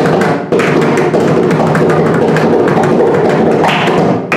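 Two mridangams playing a mohra in khanda jati jhampa tala: a dense, fast run of strokes, with a brief break about half a second in.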